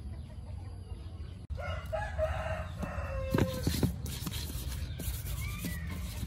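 A rooster crowing, with chickens clucking. About a second and a half in, the sound cuts abruptly, then comes a crow ending in one long held note, with a few sharp knocks around the middle.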